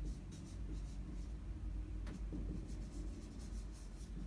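Dry-erase marker writing a word on a whiteboard: a run of short, faint strokes over a steady low room hum.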